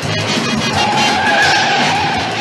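A Plymouth's tyres squealing as the car is thrown hard through a turn, one long steady screech setting in under a second in. Loud chase music plays underneath.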